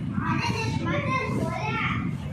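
Children talking and calling out in high-pitched voices.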